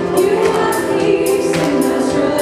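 A live church praise band playing an upbeat worship song, with women's voices singing the melody over a steady percussive beat.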